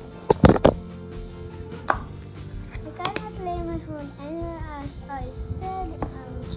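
Loud knocks and rubbing from a handheld phone being moved about, a cluster in the first second and single knocks about two and three seconds in, over steady background music; a child's voice with rising and falling pitch comes in during the second half.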